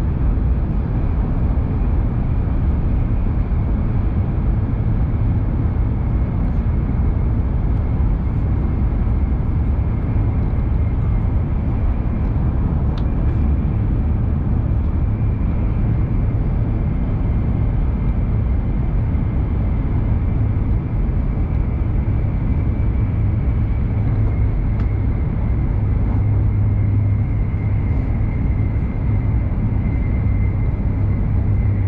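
Hokuriku Shinkansen train running at speed, heard inside the passenger cabin: a steady, heavy low rumble of wheels on rail and air rushing past, with a faint high whine that sinks slightly in pitch in the second half.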